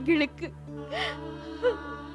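A woman crying in grief, gasping and breaking into short sobbing wails, over steady background music.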